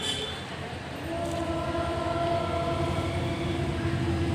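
Students' voices in unison holding one long, steady note, beginning about a second in, as a prayer begins.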